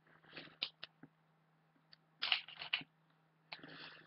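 Faint clicks, taps and scrapes of small makeup items being handled, with a short cluster of them about two seconds in and a brief rustle near the end.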